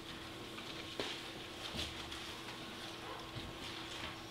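Quiet room with a steady low hum and a few faint scattered clicks and rustles, the clearest click about a second in.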